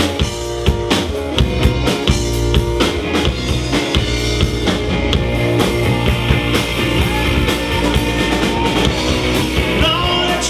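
Live rock band playing loud and steady: electric guitars and bass over a drum kit keeping a regular beat.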